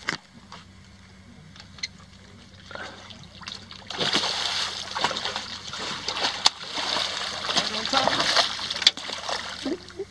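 A hooked redfish thrashing and splashing at the surface beside the boat as it is brought to the landing net. The splashing starts about four seconds in and goes on loudly, with sharp slaps, to the end.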